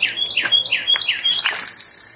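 A songbird singing a quick series of about six downslurred whistled notes, around four a second. A high, even buzz comes in near the end.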